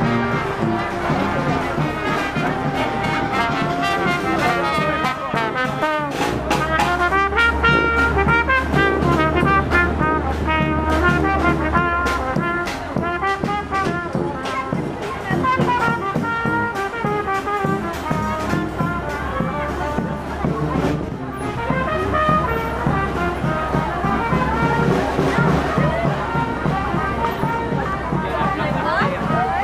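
Brass band playing a tune with drums keeping the beat, under the chatter of people nearby.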